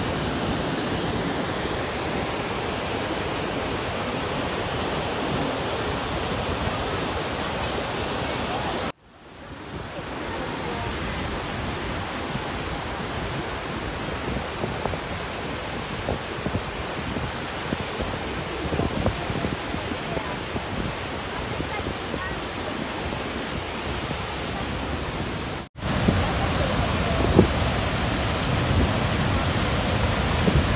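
Steady rush of Niagara Falls' water pouring down, an even roar-like noise with no pitch. It drops out briefly twice, about nine seconds in and again a few seconds before the end, and comes back a little fuller and deeper after the second break.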